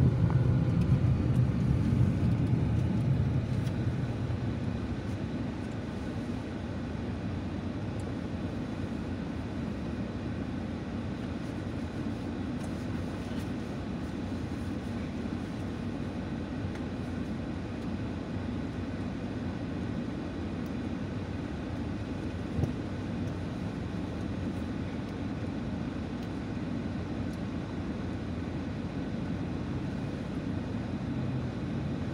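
Car cabin noise of engine and tyres, a steady low hum. It eases off over the first few seconds as the car slows toward the traffic lights, then stays at a lower steady level.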